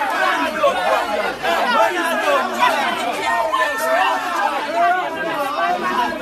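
Several people's voices talking loudly over one another, a dense unintelligible chatter of overlapping speech.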